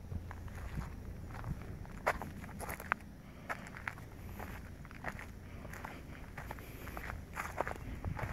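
Footsteps of a person walking outdoors: irregular crunching steps, about one or two a second, the sharpest about two and three seconds in, over a steady low rumble.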